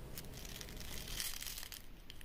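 Faint crinkling rustle of a sheer organza drawstring pouch filled with dried rose petals as it is handled and its drawstring pulled shut, with a few small crackles.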